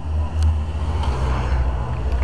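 Motorcycles riding past close by on the road, engines running, loudest about half a second in.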